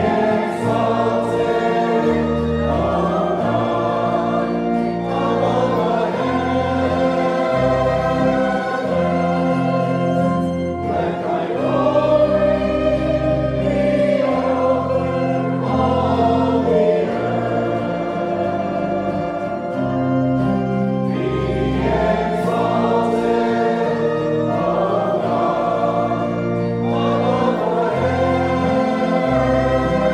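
Choir and congregation singing a hymn in a church, accompanied by an organ holding long, steady bass notes; this is the recessional hymn as the procession leaves.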